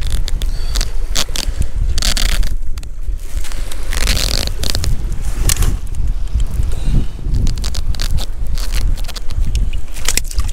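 Scraping, rustling and clicking as hands and pliers work a hook out of a small wrasse held in a landing net, over a steady low wind rumble on the microphone.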